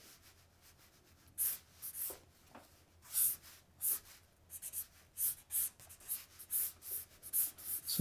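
Marker pen drawing on a paper sketch pad: short scratchy strokes. They start about a second and a half in, come sparsely at first, then follow in quick succession through the second half.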